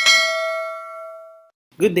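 Notification-bell sound effect: a single bell ding that rings with several clear tones and fades out over about a second and a half.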